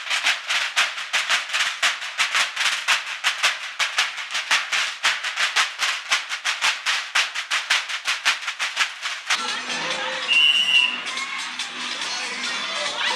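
Snare drums of a school drum corps playing a steady, rapid marching beat with the snares rattling. About nine seconds in it cuts to crowd noise with music and a brief high whistle.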